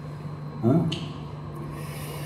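A pause in a man's talk into a table microphone: one short spoken "Ha?", then a steady low hum and a soft hiss in the second half.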